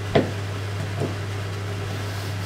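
Large kitchen knife chopping cooked tripe on a plastic cutting board: one sharp knock just after the start, then a fainter one about a second later.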